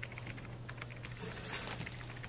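Light, irregular clicks and rustles of paper as a torn note is pulled off a pushpin on a corkboard, over a faint steady low hum.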